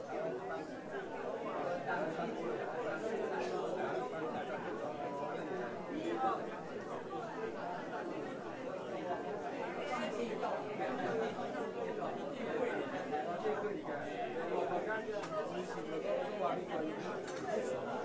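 Indistinct chatter: many people talking at once, their voices overlapping with no single speaker standing out.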